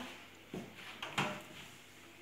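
Kitchen oven door being pulled open: a few short, soft knocks and clunks, the loudest just over a second in.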